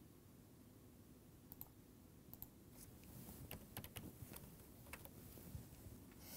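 Faint computer mouse clicks and keyboard keystrokes: a scattered run of light, sharp clicks starting about one and a half seconds in, over quiet room tone.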